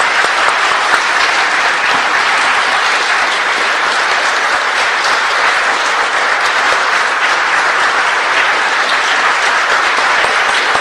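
An audience applauding, a dense and steady clapping.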